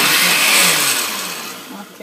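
Oster countertop blender running on orange, kiwi and a little water, its motor and the liquid churning in the glass jar, then winding down and fading over the second half as it stops.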